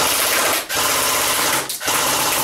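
Echo1 RPK airsoft electric gun with a version 3 gearbox firing full-auto on an 11.1 V LiPo battery, in rapid continuous bursts. Two brief pauses break the fire, one early on and one near the end.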